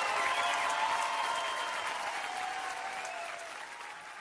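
Audience applauding and cheering at the end of a song, the applause fading away toward the end.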